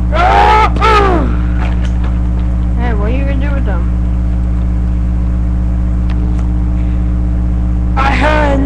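A steady low hum runs throughout and is the loudest sound. Over it a boy makes two short wordless vocal sounds with sliding pitch, one near the start and one about three seconds in, as play noises for his toy fight.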